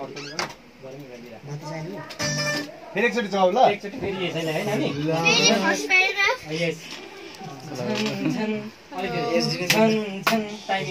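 Voices talking over music playing in the room, with a high, wavering singing voice in the music.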